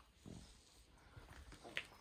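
Near silence, with a few faint, brief sounds and one short, sharper sound just before the end.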